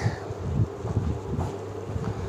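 A steady low hum with a faint background hiss in a room.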